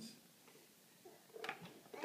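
Quiet room tone with a couple of light knocks about one and a half seconds in, from small children handling a toy play kitchen's doors and parts.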